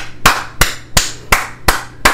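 One person clapping their hands in a steady rhythm, about three sharp claps a second.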